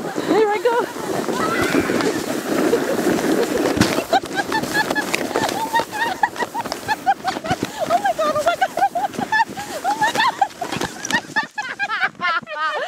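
People laughing and squealing during a fast sled ride down a snowy hill, with the sled scraping over the snow, loudest in the first few seconds.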